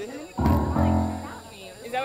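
Electronic keyboard sounding two held chords, one straight after the other, starting suddenly about half a second in, with people talking around it.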